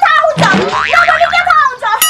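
A woman crying out in a loud, wavering wail, with a wobbling, boing-like comedy sound effect mixed in toward the end.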